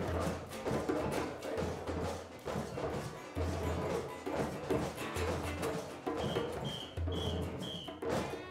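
A group of children hand-drumming on djembes, with many strikes, mixed with a background music track that has a recurring low bass note. Four short high notes sound near the end.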